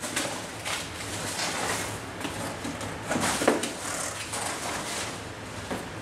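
Plastic bag and cardboard packaging being handled: irregular rustling and crinkling, loudest about three seconds in.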